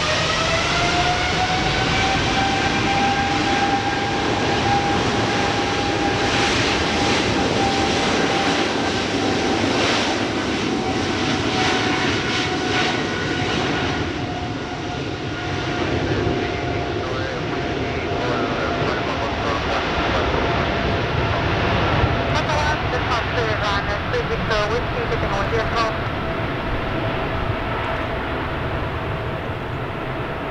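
Boeing 777-300ER's two GE90-115B turbofan engines at high thrust during the takeoff run: a whine that rises in pitch in the first second, then holds steady over a loud rushing noise and slowly falls in pitch through the rest.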